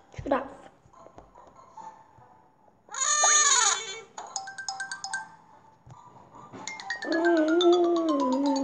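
Cheerful background music from a children's storybook app, with cartoon sound effects: a quick swoosh near the start, a loud warbling call about three seconds in, and a short wavering vocal sound near the end.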